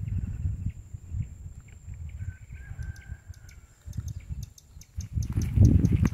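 Outdoor ambience at a reservoir's edge: a low, uneven rumble of wind on the microphone, with a faint bird call a couple of seconds in and light high ticking in the second half. The rumble grows louder about five seconds in.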